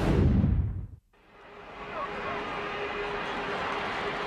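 Television sports broadcast transition sting: a loud whoosh falling in pitch with a low boom, cut off after about a second. Stadium crowd noise then fades back in and holds steady.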